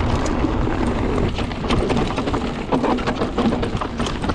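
Mountain bike rolling down a dry gravel trail: tyres crackling over loose stones with many short clicks and rattles from the bike, under a steady rush of wind on the action camera's microphone.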